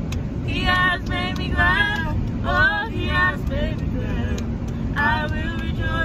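Gospel singing: a voice sings short, bending melodic runs without clear words over a steady low rumble.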